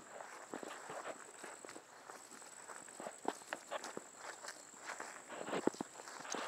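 Footsteps walking across mown grass, an irregular run of soft steps.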